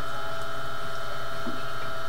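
Steady electrical hum made up of several constant tones, unchanging throughout.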